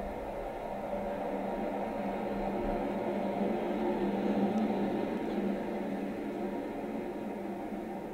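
Gilmour Space Eris rocket lifting off: a steady low rumble of rocket engines that swells a little midway and then eases slightly.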